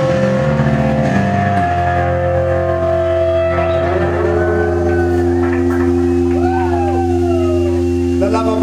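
A rock band's closing chord: electric guitars and bass ring out on a long held chord once the drums stop, about a second and a half in. Over it, whining feedback tones slide up and down in pitch.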